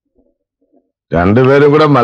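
Near silence, then about a second in a man's voice starts, loud and drawn out.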